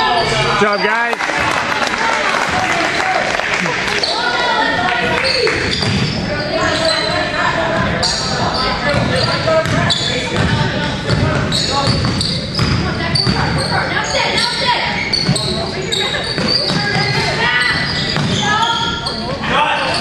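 Basketball game in a gymnasium: a ball bouncing on the hardwood court under steady, indistinct shouting from players and spectators, with the echo of a large hall.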